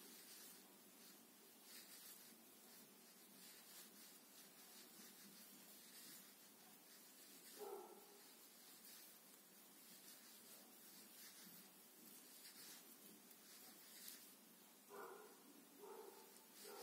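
Near silence: room tone with faint rubbing of yarn as a crochet hook works stitches, and two short faint sounds, one about eight seconds in and one near the end.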